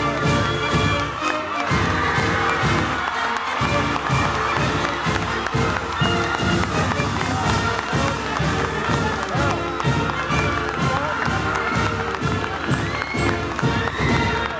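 A band playing with a steady drumbeat, over a cheering crowd.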